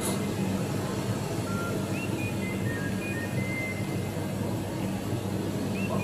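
A simple melody of thin, high single notes that repeats about every four seconds, over a steady low hum, with a brief click at the very start.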